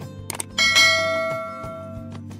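YouTube subscribe-button sound effect: a quick double mouse click, then a bell ding that rings out and fades over about a second, over background music.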